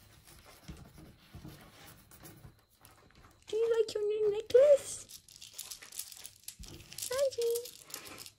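Crinkling and rustling of loose craft threads and a beaded necklace being handled on a table, with a short wordless voice-like sound in the middle and a brief one near the end.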